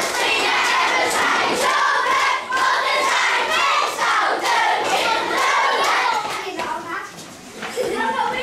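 A roomful of children singing and shouting loudly together, with hand claps. The noise dies down briefly near the end.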